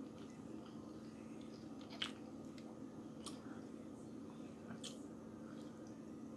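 A person chewing a mouthful of Impossible Whopper burger, faint and soft, with a few short sharp clicks about two, three and five seconds in.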